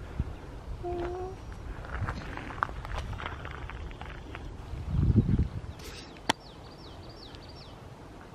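Quiet outdoor ambience in grassland. A low rumble comes about five seconds in and a sharp click a second later, then a small bird gives a quick run of short falling chirps.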